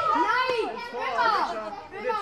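Young children's high-pitched voices calling out and chattering, their pitch rising and falling in arcs.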